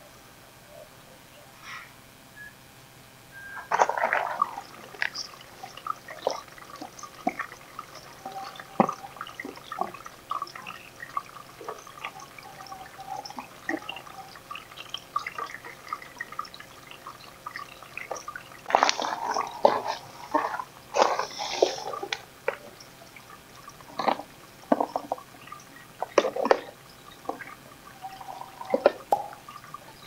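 Water dripping and splashing inside a hydroponic growing tower, in irregular drops that start a few seconds in and come thickest about two-thirds of the way through.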